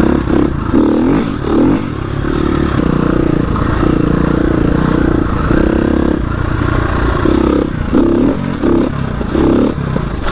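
KTM 350 EXC-F dirt bike's four-stroke single-cylinder engine riding single-track, revving up and down in repeated swells as the rider works the throttle, with the clatter and scrape of the bike over the rough trail.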